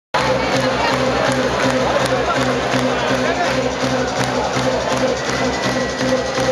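Live band music played through a concert PA, with a steady repeating bass line, over the noise of the audience.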